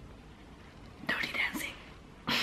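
A woman's short whispered, breathy vocal sound about a second in, after a moment of quiet room tone.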